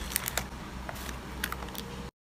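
Light clicks and taps of paper cards and a sticker being handled and set down in a cardboard box. There are a few quick ones at the start and another pair about one and a half seconds in, over a steady low hum.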